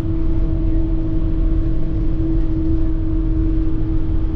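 Bus driving, heard from inside the cabin: a steady low engine and road rumble with a constant whine over it.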